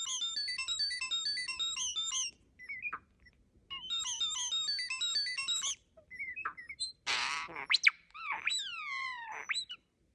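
European starling singing, mimicking mechanical sounds: two runs of rapid, repeated high chirping notes, then a brief harsh rasp about seven seconds in, and falling whistled glides near the end.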